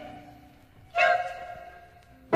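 Music from a short chamber opera: a held sung chord fades out, then about a second in a single chord is struck and rings away.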